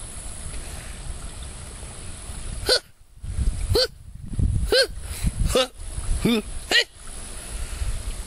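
A man's high-pitched vocal grunts imitating a women's tennis player: six short cries, each rising and falling in pitch, about one a second, starting about three seconds in. A low outdoor rumble runs underneath.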